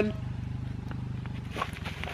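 A low, steady motor hum with a rapid pulse, like a small engine running some way off, fading about a second and a half in. A few knocks and rustles follow near the end as the loaded bicycle is handled and lifted.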